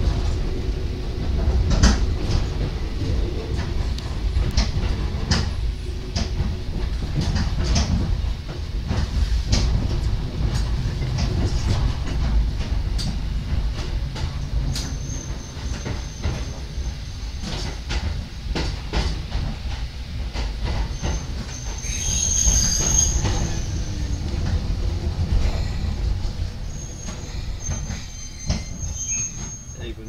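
Hakone Tozan Railway electric train running, heard from the front of the car: a steady low rumble with irregular clicks of the steel wheels over rail joints. From about halfway through the wheels give thin high squeals on the curves, loudest about two-thirds of the way in, and the running sound fades near the end.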